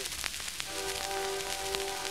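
Old phonograph record playing, with steady crackle and clicks of surface noise. About a second in, a single musical note starts and is held steadily.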